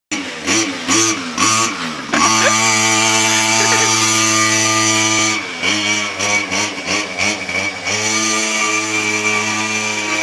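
Small two-stroke pocket bike engine revving up and down, then holding a steady note for a few seconds, dipping and rising again, and settling back to a steady run.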